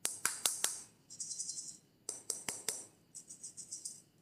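Small foam beads rattling inside a clear plastic ball container being handled, with sharp clicks of the plastic shell. Two sets of quick clicks, each followed by about a second of high, hissy rattling.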